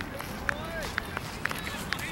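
Distant, indistinct voices of people around an outdoor cricket field, with a few short high chirps over a steady outdoor background.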